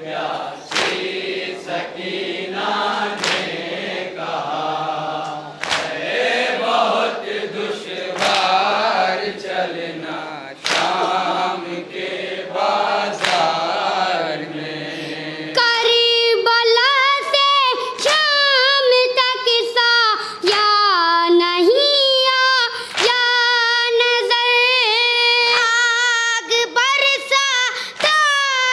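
A group of mourners chanting a nauha lament in unison, with sharp slaps about once a second from matam chest-beating. About halfway through, the sound cuts to a boy's solo voice singing the lament into a microphone.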